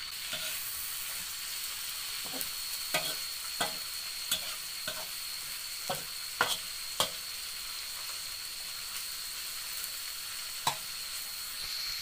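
Cut asparagus sizzling in hot oil in a wok as it is stir-fried until just crisp. A spatula scrapes and knocks against the wok about ten times at irregular intervals over the steady sizzle.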